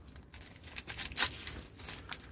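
Individual wrapper of a sterile serological pipette being torn open and pulled off: irregular crinkling and tearing, with a sharper rip a little over a second in.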